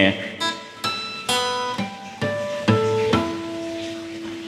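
Natural harmonics at the fifth fret of an acoustic guitar: about seven single notes plucked one after another with a finger resting lightly over the fret wire. They give clear, pure tones, and the last and lowest note is left ringing.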